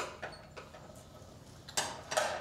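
Struck hand percussion played in a slow, uneven rhythm. Two light, wooden-sounding knocks come at the start, then a pause, then one loud knock with a short ringing tail near the end.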